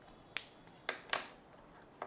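Three short, sharp clicks over faint room noise: one about a third of a second in, then two close together around a second in.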